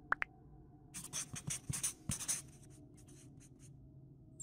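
Handwriting sound effect of a pen scratching out words in a quick run of strokes. It starts about a second in, lasts about a second and a half, and then fades to fainter strokes. Two short chirps come at the very start.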